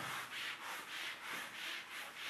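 Felt whiteboard eraser wiping dry-erase marker off a whiteboard in rapid back-and-forth strokes, about two a second.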